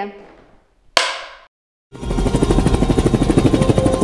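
A single sharp clapperboard snap about a second in. Then a short silence, and from about two seconds in a loud, fast, even rattle of about a dozen strikes a second. Near the end a steady tone joins it.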